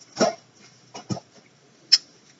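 A few short handling sounds as disc cases are picked up: a brief low vocal noise, like a grunt, about a quarter second in, two faint knocks about a second in, and a sharp click near the end.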